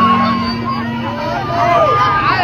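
A crowd of many people shouting and cheering at once, voices overlapping close around. A steady low hum fades out about half a second in.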